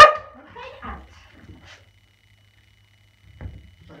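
A dog barks once, sharply and loudly, at the very start, followed by faint small sounds of movement.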